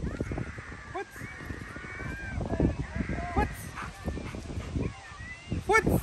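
A series of short, high-pitched animal cries, each rising and falling in pitch, coming in scattered runs with a louder cluster near the end.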